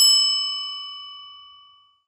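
A single bell-like ding sound effect, struck once and ringing out with a bright, clear tone that fades away over about two seconds.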